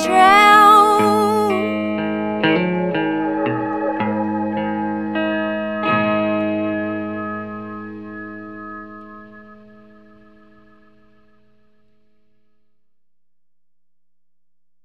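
End of a song: a held, wavering note over guitar, then a few plucked guitar notes and a final chord that rings out and fades away about ten seconds in.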